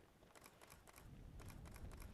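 Near silence broken by two quick runs of faint clicks, the first starting shortly after the start and the second about a second and a half in.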